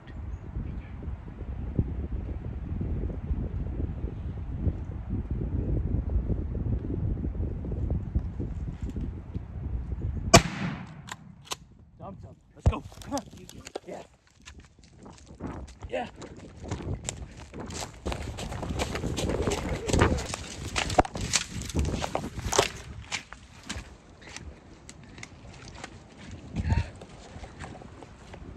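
A single 12-gauge shotgun shot with a 3.5-inch magnum turkey load, about ten seconds in, after a stretch of low rumble. It is followed by scattered clicks and knocks of the camera being handled.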